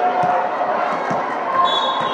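A ball bouncing on a hardwood gym floor, a few dull thuds, over the chatter of voices in a large hall.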